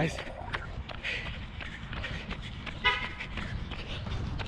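Wind rumble and faint footfalls picked up by a chest-mounted camera during a run, with one short tooting tone, like a car horn, about three seconds in.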